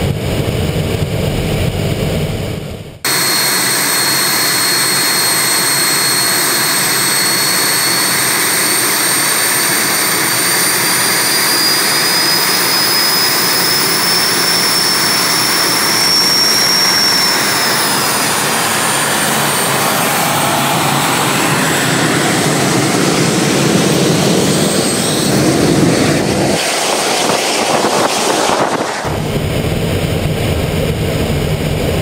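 The twin General Electric CJ610 turbojets of an Me 262 replica running on the ground: a loud jet roar with a high whine that slowly rises in pitch, then falls away as the jet rolls off. For the first three seconds a lower engine sound, heard from on board the aircraft, cuts off abruptly.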